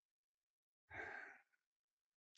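A single soft sigh, a short breath out about a second in, with near silence around it.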